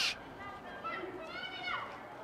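A faint, high-pitched shout from a soccer player on the field: one drawn-out call about a second in, over quiet field ambience.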